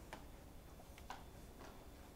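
Very quiet room tone with three faint, short clicks: one near the start, one about a second in and one half a second later.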